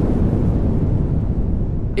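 Logo-sting sound effect: a loud, steady, low rumble of noise with no tune or voice in it.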